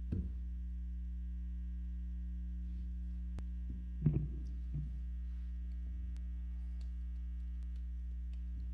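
Steady electrical mains hum from a live amplified music rig, with a ladder of overtones above the low hum. A brief handling bump at the microphone comes about four seconds in.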